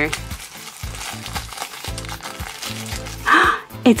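Crinkly toy blind bag being crumpled and torn open by hand, a quick run of crackles, with a louder rustle near the end.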